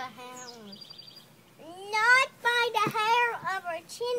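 A young child singing in a high voice without clear words, starting about one and a half seconds in with a rising glide and then held, wavering notes.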